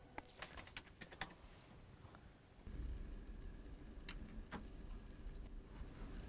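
Faint clicking of a computer keyboard: a quick run of key clicks in the first second and a half, then two more a couple of seconds later. A low rumble comes in about halfway through.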